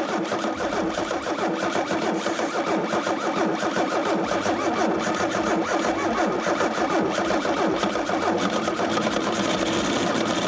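Car engine running just after a cold start at about −30 °C, its oil thickened by the cold, with a fast, steady mechanical clatter over the running note.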